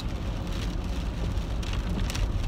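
Steady road and tyre noise inside the cabin of a moving electric car on a wet road: a low rumble with a hiss of wet tyres over it.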